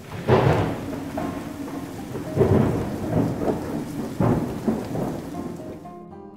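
Thunderstorm: rolling thunder rumbling in several swells over steady rain.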